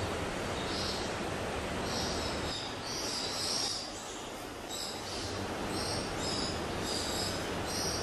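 Steady hiss of indoor pavilion ambience, with short high-pitched chirps recurring about once a second.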